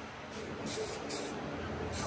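Aerosol can of adhesion promoter spraying onto a plastic bumper in short hissing bursts, the strongest two close together about a second in.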